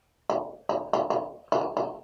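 A pen tapping and stroking against an interactive whiteboard screen while writing letters: about seven short, irregular taps, roughly three a second.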